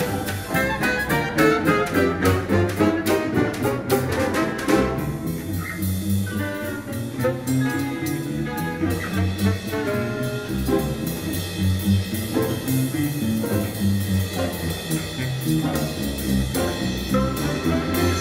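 Contrabass balalaika plucking a bass line, accompanied by an ensemble of Russian folk instruments: domras and balalaikas with winds. The ensemble is busiest for the first five seconds or so, then thins out.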